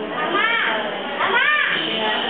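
Children's voices calling out in the background: two high-pitched calls, about half a second and a second and a half in, over a steady murmur of voices.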